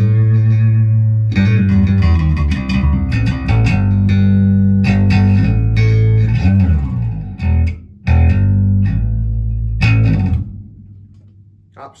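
Yamaha BB434 electric bass played with all its pickups on, a run of loud plucked notes with a twangy but full, rich tone. The playing stops about ten seconds in and the last note rings away.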